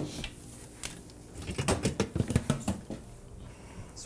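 Kitchen knife dicing cucumber on a cutting board: a run of quick, light taps in the middle, with a few scattered clicks before and after.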